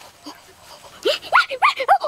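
A quick run of about four short, high-pitched yelping cries, each rising and falling in pitch, starting about halfway through after a quiet first half.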